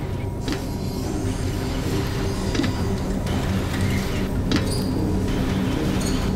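A steady low rumbling drone with a few scattered faint clicks and creaks.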